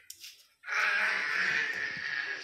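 A young child's long drawn-out wail, one steady held cry of about two seconds starting about half a second in.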